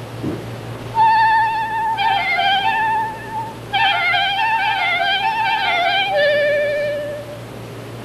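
Clarinet playing short ornamented phrases of wavering notes, starting about a second in, with a brief break midway, and ending on a lower held note.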